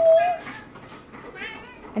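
Domestic cat meowing: a drawn-out meow right at the start, then a fainter call about a second and a half in.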